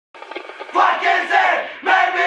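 A crowd of voices shouting together in unison, in loud rhythmic surges about a second apart, like a chant; it starts quietly and swells at the first surge.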